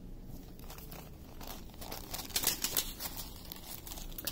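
Thin plastic packaging crinkling as it is handled: a run of light, irregular crackles, sparse at first and denser in the second half.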